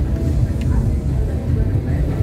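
Busy street ambience: a loud, steady low rumble with people's voices and music mixed in underneath.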